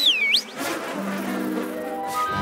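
Cartoon bee swarm buzzing as it lifts off the ponies and flies away, with a short high sliding squeak at the very start. Soft sustained music chords come in about a second in.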